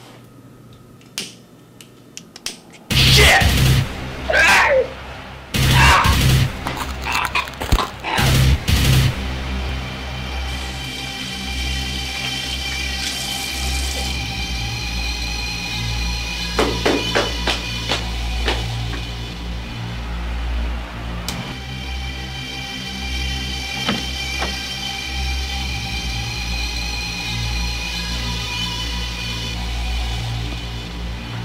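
Horror film score: a run of loud, sudden stabs starting about three seconds in, then a steady music bed of held tones over a low pulse.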